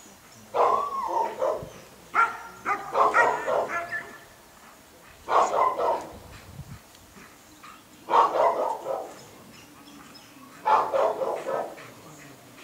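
Dog barking in five bursts of several barks each, a couple of seconds apart.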